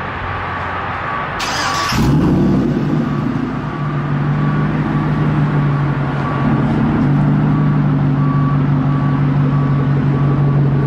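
Chevrolet Silverado pickup's engine started: a short burst of cranking noise about one and a half seconds in, then it catches at two seconds and settles into a steady, deep idle. A high beep repeats at an even pace throughout.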